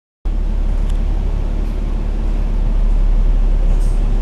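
Diesel engine of an Alexander Dennis Enviro500 MMC double-decker bus running, heard from inside the upper deck as a loud, steady low drone. It starts abruptly about a quarter second in.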